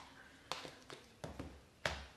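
About five light knocks and taps, the last one the loudest, as small kitchen containers are handled and set down on a countertop.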